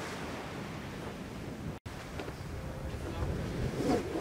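Steady rush of wind and sea around an ocean racing yacht under way, with wind buffeting the microphone. The sound drops out for an instant just before two seconds in.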